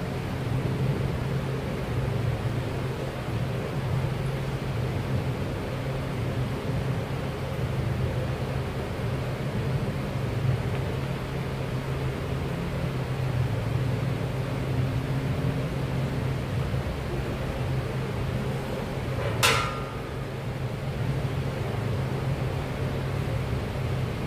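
Steady low mechanical hum of a gym's ventilation or air-conditioning plant. A single sharp metallic clink with a brief ring cuts through it about three-quarters of the way in.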